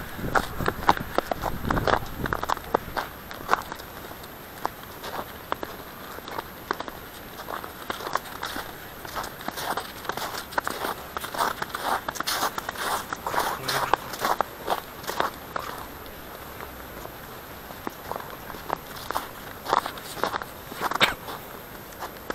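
Footsteps crunching irregularly through thin snow over grass: a walker and a dog on a leash, the paws sometimes breaking through the snow.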